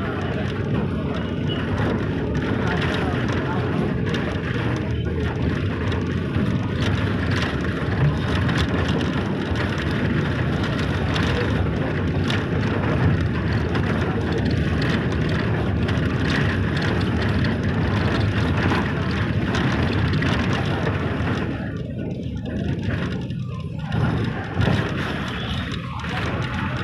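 Steady road and engine noise of a moving vehicle, heard from inside it, easing off for a couple of seconds near the end.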